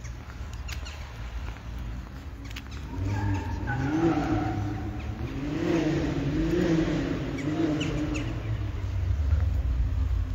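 A motor vehicle's engine accelerating from about three seconds in, its pitch rising and dropping back several times as it revs through the gears, over a low steady rumble.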